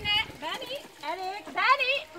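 Children's voices chattering and calling out in high, rising tones, in short bursts.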